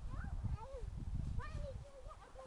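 A toddler's high-pitched voice: several short squealing calls that bend up and down in pitch. Under them runs a louder low rumbling noise on the microphone that eases off near the end.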